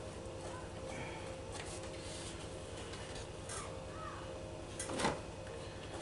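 Faint distant children's voices calling and shouting over a steady room hum, with one sharp knock about five seconds in.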